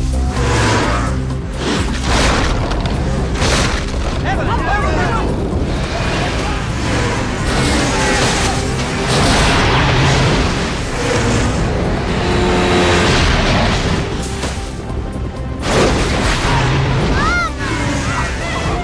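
Film-trailer sound mix: dramatic music over loud booms and a dense, continuous rushing rumble of an avalanche, with brief human cries now and then.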